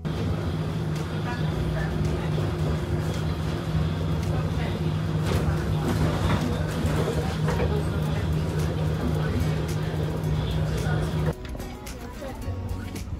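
Bus interior while riding: a steady low engine drone with rattles and knocks from the bodywork, cutting off abruptly near the end.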